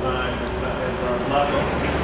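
Faint, indistinct talking over a steady low hum and background noise.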